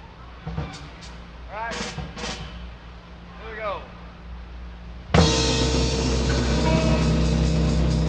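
Live rock band coming in together about five seconds in with a loud, sustained chord, the start of a song. Before it, a steady low hum from the sound system and a few scattered audience yells.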